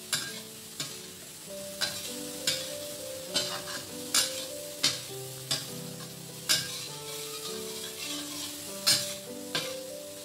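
Metal spatula scraping and knocking against a stainless steel wok as shrimp are stir-fried, about one stroke a second, over a steady sizzle of frying sauce.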